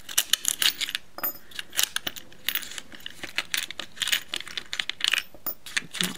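Small metal rotary-tool bits and accessories clicking and rattling against their compartmented plastic case as they are picked out by hand: a run of many irregular small clicks.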